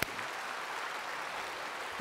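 A large congregation applauding: many hands clapping in a steady, even wash of sound.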